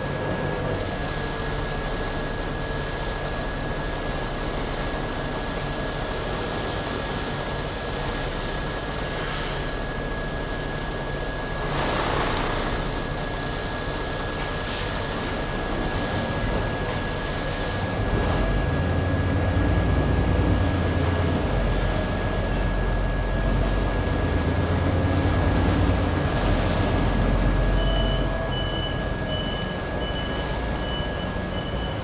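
Cabin noise inside a city bus: the engine runs under a constant thin high whine, with a short hiss of air about twelve seconds in. The engine grows louder for about ten seconds as the bus pulls ahead, and a row of short, evenly spaced high beeps starts near the end.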